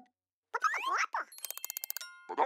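Cartoon sound effects: a few quick gliding pitch sweeps, then a fast run of clicks like a dial being cranked round, ending in a ringing bell-like ding.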